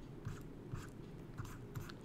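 Faint, irregular small clicks and rustles over quiet room tone.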